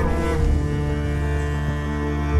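Background music of slow, sustained low string notes with a deep held bass, changing note about half a second in.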